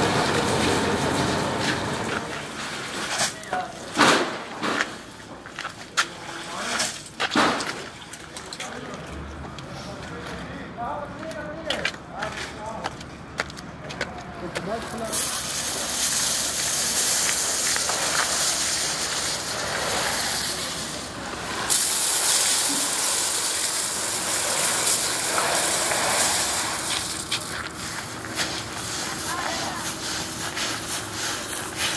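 Sacks knocked and shuffled about for the first half, with some indistinct voices. Then a steady hiss of shredded black plastic pouring from a sack onto concrete, with a brief break partway through, followed by the flakes being scuffed and spread underfoot.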